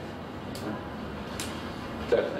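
Quiet room tone, a steady hiss, broken by two faint clicks about half a second and a second and a half in.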